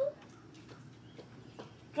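Quiet outdoor background with a few faint short ticks.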